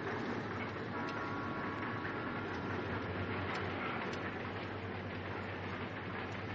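Steady rumble and rattle of a moving passenger train, heard from inside a carriage corridor, with a few faint clicks. A faint thin whine comes in about a second in and fades a second or so later.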